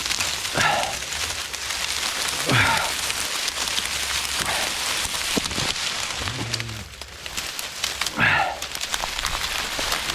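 Dry reed stalks crackling and rustling as a person pushes through a dense reed bed: a steady crackle made of many small snaps and scrapes, easing off briefly about seven seconds in.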